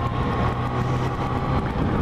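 Yamaha FZ-09 motorcycle engine running at low, steady revs as the bike rolls off at low speed, its steady hum fading shortly before the end.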